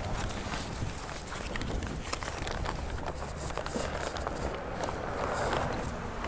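Rustling and crinkling of a foil-lined paper sandwich bag being unwrapped by hand close to the phone's microphone, many small irregular crackles with a louder rustle near the end.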